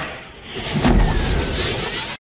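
Film sound effects: a man's shout trails off at the start, then about two-thirds of a second in a deep rumbling boom breaks out and carries on as a loud whooshing noise.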